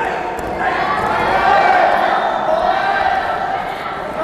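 Several people shouting during a wrestling bout, with the voices overlapping and growing louder about a second in.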